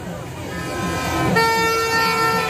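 Dense crowd noise, with a single long, steady horn blast starting near the end.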